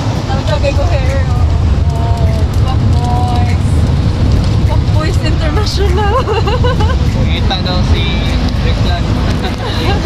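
Jeepney engine and road rumble heard from inside the open-sided passenger cabin as it drives, steady throughout, with people's voices chatting over it.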